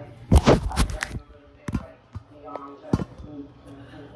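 Knocks and bumps of a phone camera being handled and set in place: a quick cluster of loud knocks in the first second, then two single sharp knocks about a second apart.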